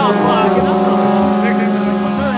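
A wind instrument's steady, loud drone with a wavering melody line over it, along with voices of the crowd.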